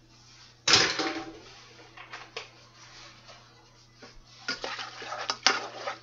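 A loud clatter about a second in, then a spoon stirring macaroni in a saucepan from about four seconds in, clanking and scraping against the side of the pot as milk is mixed into the pasta.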